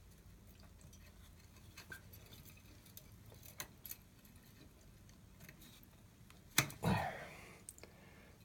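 Faint metallic clicks and jingling of a toilet flush lever's lift chain and hook being moved along the flat metal lever arm inside the tank, with a sharper click and a brief rattle about six and a half seconds in.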